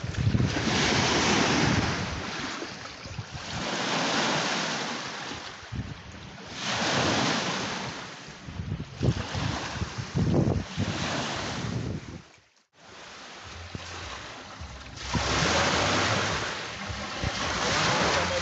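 Small Lake Victoria waves washing onto the sandy shore, coming in surges every two to three seconds, with wind on the microphone. The sound cuts out briefly about twelve seconds in.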